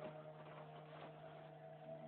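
Faint, steady low hum with a few soft clicks.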